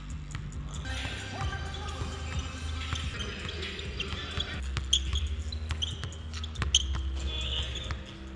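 A basketball being dribbled hard and fast on a hardwood gym floor, a quick run of sharp bounces, the loudest about five seconds in and again near seven seconds. Background music with a deep, steady bass plays underneath.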